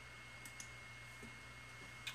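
Quiet room tone with a steady faint hum and a few scattered faint clicks, as of a device being clicked or tapped.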